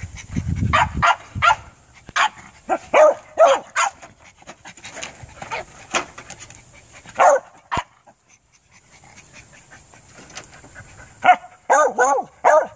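A dog whining and yipping in short, quick bursts, excited at a lizard it has scented hidden in a junk pile. After a quieter stretch it gives a few louder barks near the end.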